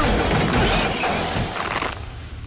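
A loud crash of shattering glass that fades away over about two seconds.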